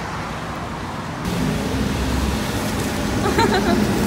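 Steady outdoor street noise with road traffic, a vehicle's low rumble rising about a second in. A brief voice is heard near the end.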